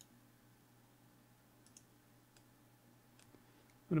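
A few faint computer mouse clicks, including a quick pair a little after halfway, over quiet room tone.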